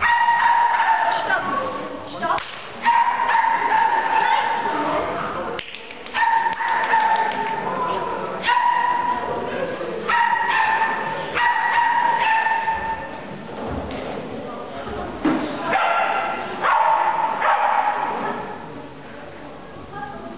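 A dog barking over and over in high, yapping barks, in runs of a second or two with short breaks, fading near the end.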